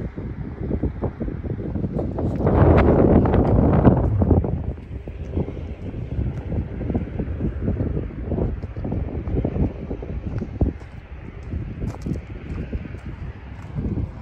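Wind buffeting the microphone, strongest in a gust about two to four seconds in, with footsteps on pavement and gravel as the person walks up to the grade crossing.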